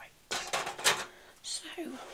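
Close-up rustling and handling noise against the microphone for about half a second, ending in a sharp click, followed by soft speech beginning near the end.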